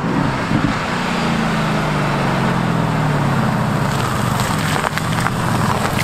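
Mercedes-AMG GT S's twin-turbo V8 approaching on a wet road, with steady tyre hiss on the wet surface. The engine note falls over a few seconds as the car comes off the throttle and slows.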